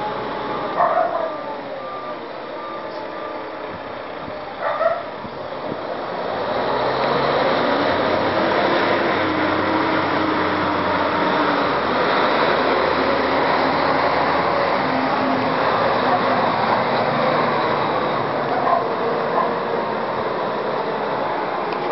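Concrete mixer truck manoeuvring: a backup beeper sounds briefly at the start and a dog barks twice in the first five seconds. From about six seconds in, the truck's diesel engine grows louder and stays loud as it pulls forward and drives past.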